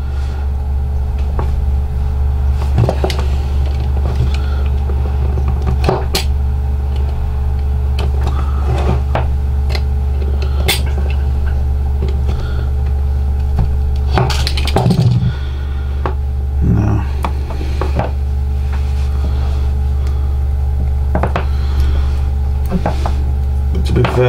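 Scattered light clicks and scrapes of fingers working on the plug end of a laptop power-supply cable, picking moulded rubber and gunk off the wires inside, over a steady low hum.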